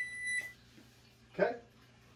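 Microwave oven giving a single half-second electronic beep, one high steady tone, as it is plugged in and powers up.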